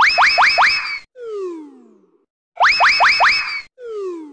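Cartoon sound effect played twice: a quick run of four rising boing-like sweeps, then one falling tone sliding down for about a second.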